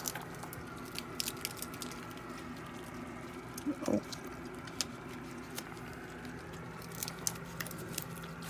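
Irregular small cracks and crunches of in-shell peanuts being bitten and chewed by animals close to the microphone, with shells rustling on the deck boards.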